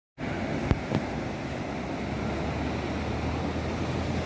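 Steady rush of ocean surf breaking on a beach, with wind buffeting the microphone. Two sharp clicks under a second in.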